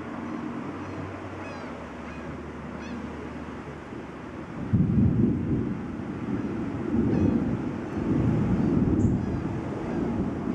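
Wind gusting against the microphone: low, irregular buffeting rumbles that start suddenly about five seconds in and swell again twice, over a steady low background. A few faint high chirps come through.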